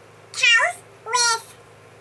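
A girl's voice making two short, high meow-like calls, each falling in pitch.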